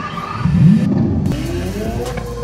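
Supercar engine start-up sound from the life-size Lego Technic Lamborghini Sián, set off from a phone app: a quick rising rev about half a second in, settling into a steady low idle drone.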